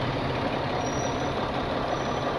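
Tow truck's engine running steadily as a low rumble, heard from inside the cab while the truck creeps forward at low speed.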